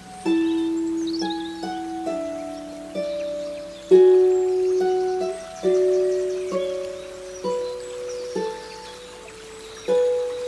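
Solo harp playing a slow, gentle melody: single plucked notes about one a second, each left to ring and fade under the next.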